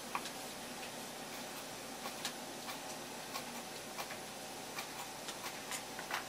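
Kitchen knife slicing yuzu peel into fine strips on a wooden cutting board: the blade knocks sharply on the wood at irregular intervals, roughly two a second, coming closer together near the end.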